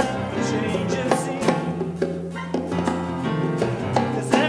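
A live band playing a steady mid-tempo groove, with hand drums and a drum kit over sustained bass notes, keyboard and acoustic guitar, in a short gap between sung lines.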